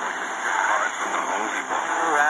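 Portable FM radio's small speaker playing a broadcast on 100.7: a voice, cut off above the low treble, over steady static hiss. Two stations on the same frequency are mixing into each other.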